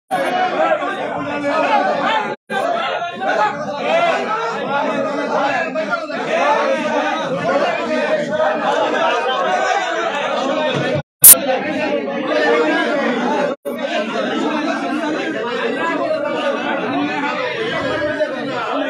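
Several people talking at once, overlapping in a large hall. The sound drops out briefly three times, and a sharp click comes about eleven seconds in.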